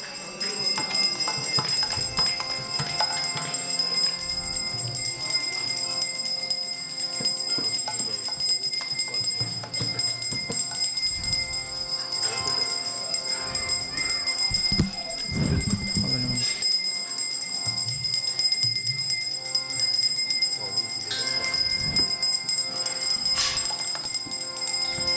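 Kirtan instruments playing without singing: metal hand cymbals and bells ringing steadily over a sustained harmonium, with a few low drum strokes about midway.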